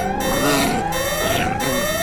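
House intruder alarm sounding in a repeated rising wail, about two sweeps a second, signalling that someone has broken into the house.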